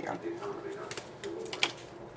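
A few sharp, light clicks and taps, a small cluster around the middle and another near the end, with a faint low murmur of voice under them.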